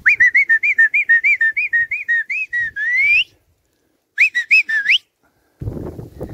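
A person whistling a quick run of short rising-and-falling notes, about four a second, that ends in an upward slide. After a short break the phrase comes again, shorter, with the same upward slide, and it cuts off suddenly.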